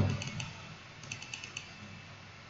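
Faint clicking of a computer keyboard and mouse: a couple of taps, then a quick run of about five keystrokes about a second in.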